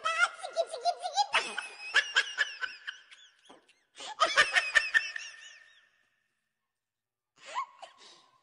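Children laughing and giggling in two bursts, the second beginning about four seconds in, then dying away.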